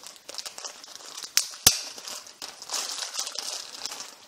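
Clear plastic bag crinkling as hands open it and slide a handheld recorder out, with two sharp snaps about a second and a half in.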